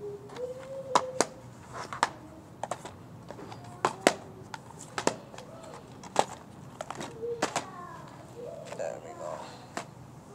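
Sharp, irregular clicks and knocks, roughly one a second, with faint voices in the background.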